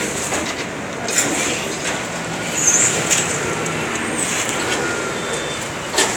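Street traffic noise, with a vehicle passing, a few short clicks and a brief high squeal about halfway through.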